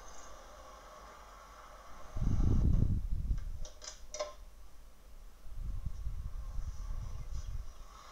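Garage room tone with a steady hum. A loud low thud comes about two seconds in, then a few sharp clicks around four seconds as the door of a red 1971 MGB roadster is opened. Softer low rumbling and rustling follow as a man climbs into the driver's seat.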